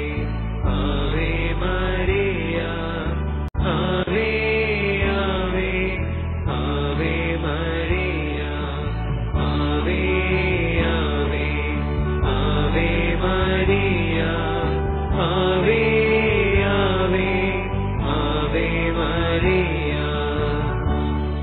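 Devotional singing: a voice chanting a Malayalam rosary prayer over a steady, sustained instrumental accompaniment, with a brief break about three and a half seconds in.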